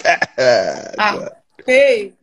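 People's voices on a group video call making wordless sounds: a drawn-out vocal sound falling in pitch, a short one about a second in, then a higher, wavering call near the end.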